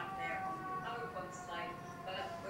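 Short high-pitched voices without clear words, over a steady whine of a few tones that sag slowly in pitch.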